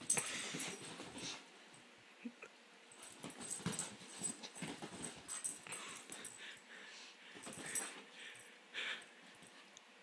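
A Shetland sheepdog scrambling about on a couch after a laser dot, its breathing and movement coming as short, uneven bursts of sound.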